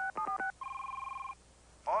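Touch-tone telephone keypad: a few quick dialing beeps as the last digits are keyed, then a single ring on the line lasting under a second.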